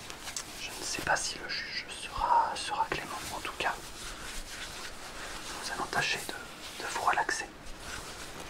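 White cotton gloves being pulled on and gloved hands rubbed together close to the microphone: soft fabric swishing and rustling with small clicks. There are breathy, whisper-like bursts about two seconds in and again near the end.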